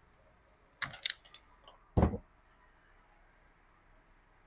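A zip-tie gun tightening and snipping a zip tie on a hose: a few quick sharp clicks about a second in, then one louder snap about two seconds in.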